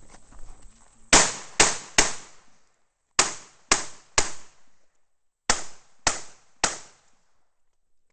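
Semi-automatic pistol fired nine times, close to the microphone, in three quick strings of three shots. The shots within each string come about half a second apart, and there is a pause of about a second between strings.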